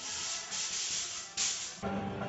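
Dark-ride sound effects: three bursts of hissing, the last the loudest, over faint background music.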